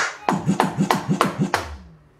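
Roland HD-1 electronic drum kit's sounds played as a fast run of sharp drum hits, each with a falling pitch, ending on a deep bass boom near the end.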